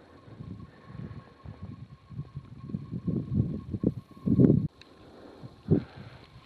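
Wind buffeting the camera microphone in irregular low gusts, the strongest about four and a half seconds in.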